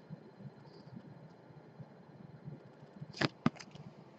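A hard plastic card holder being handled, mostly quiet, with a few sharp clicks and knocks near the end as it is turned over.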